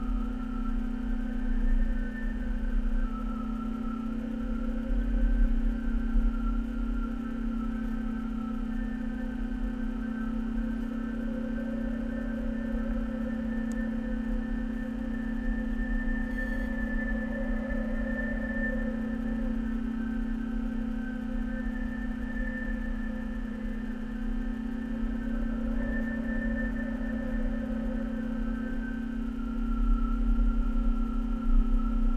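A steady droning hum with several held tones that waver slightly, over a low rumble that swells and fades.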